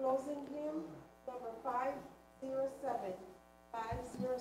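Two people talking quietly in short phrases with brief pauses between them, away from the microphone, over a faint steady electrical hum.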